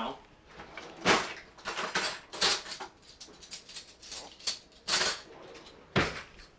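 Kitchen drawer and utensil clatter, heard as several separate knocks and clunks spread over a few seconds while a pasta spoon is fetched.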